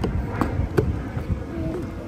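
Wind rumbling on the microphone, with a few sharp footsteps on wooden boardwalk planks in the first second.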